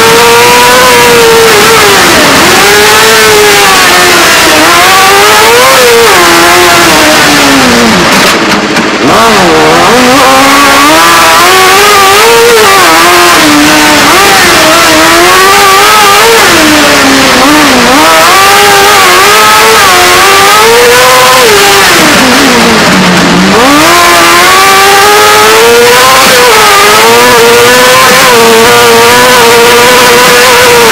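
Loud race car engine heard from inside the cockpit, revving hard and rising and falling in pitch over and over as the car accelerates, shifts and takes corners, with deeper drops in revs about eight seconds in and again near 23 seconds.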